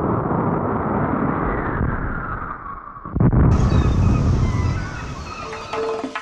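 A loud low rumble under a hissing whoosh that slides down in pitch, then a sudden deep boom about three seconds in, followed by more heavy rumbling.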